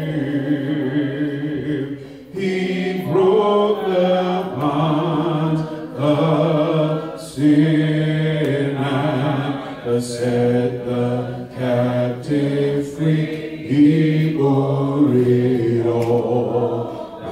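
A man singing a slow hymn into a microphone, long held notes in phrases with short breaks between them.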